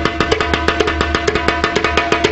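Candombe chico drum, the smallest and highest-pitched of the three candombe drums, played with a stick and hand. It beats out a steady, fast pattern of sharp strokes.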